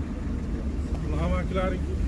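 A steady low rumble, with men's voices talking in the background about a second in.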